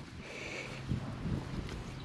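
Wind on the microphone as a steady low rush, with soft rustling of wheat stalks and heads brushing past as the camera moves through the standing wheat.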